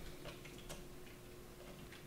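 A few faint computer mouse clicks, about three, over quiet room tone with a faint steady hum.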